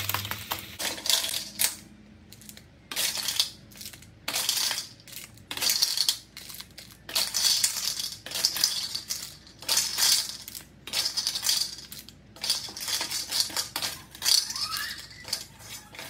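Blood cockles in their shells clattering against one another and a metal wok as they are stirred with a wooden spatula, in short, sharp bursts about two a second.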